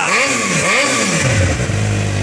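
2009 Suzuki GSX-R600's inline-four engine revved twice through its megaphone exhaust, then dropping back to a steady idle a little past a second in.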